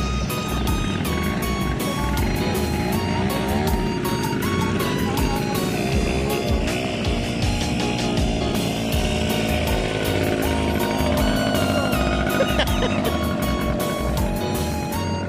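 Background music with a steady beat over quad-bike ATV engines revving up and down as they climb a rocky slope.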